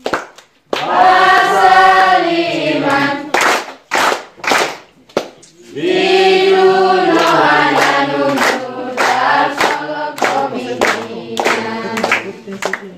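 A group of children and young people singing together with hand clapping. Sung phrases with held notes alternate with stretches of claps at about two a second.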